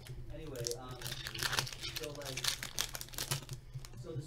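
Foil wrapper of a 2015-16 Upper Deck Champs hockey card pack crinkling as the pack is opened and the cards are handled and flipped through. Soft speech and a steady low hum run beneath it.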